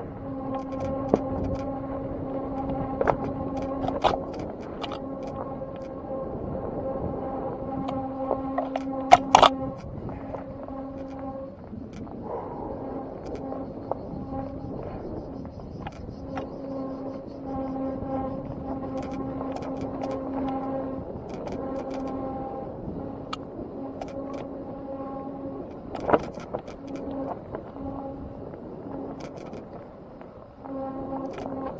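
A small motor whines steadily as a vehicle is ridden along a rough forest singletrack, the whine cutting in and out every few seconds. Knocks and rattles come from bumps in the trail, with the loudest cluster of sharp knocks about nine seconds in and another near the end.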